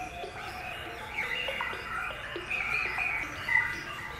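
Small birds chirping with many short, quick calls and pitch sweeps, over faint sustained tones of background music. The loudest chirp comes about three and a half seconds in.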